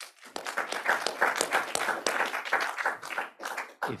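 Audience applauding: dense clapping that builds in the first second, holds, and dies away just before a man's voice begins at the very end.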